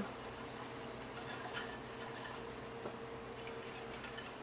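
A few faint taps of a whisk stirring sauce in a small metal pot, over a faint steady hum.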